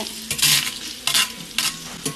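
Onions and garlic cloves frying in foaming butter in a skillet, sizzling steadily, with a utensil stirring and scraping through them in a few strokes.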